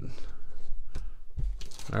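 Foil trading-card pack wrapper crinkling and crackling as it is handled, with irregular rustling and a few sharp crinkles.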